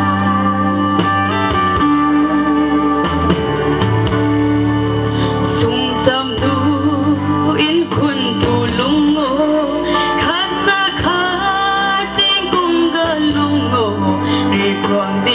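A woman singing a song into a handheld microphone over instrumental accompaniment, her voice gliding and bending through held notes.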